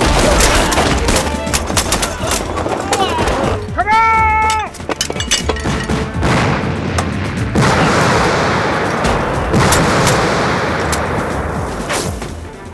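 Film battle sound effects: a rapid volley of rifle shots, then a one-second yell about four seconds in. From about halfway, a long rushing explosion blast follows.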